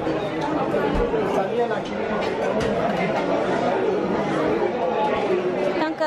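Crowded restaurant dining room full of overlapping conversation from many diners and staff, a steady hubbub of chatter.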